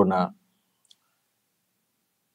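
A man's speaking voice breaks off just after the start, then near silence with a single faint click about a second in.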